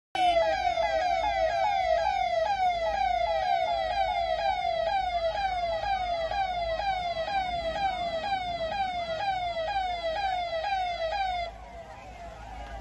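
A convoy vehicle's electronic siren sounds a rapid, repeating falling yelp, about two sweeps a second. It cuts off suddenly near the end.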